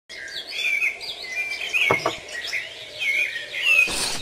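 Songbirds chirping and warbling in quick, varied phrases, with a short burst of noise just before the end.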